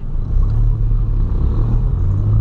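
Steady low rumble of a 2008 VW Polo sedan's 1.6 engine running, with road noise, heard from inside the cabin.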